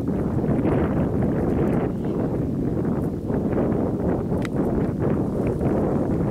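Wind rumbling on the microphone, with scattered small clicks and rustles of shells being picked up by hand from dry grass.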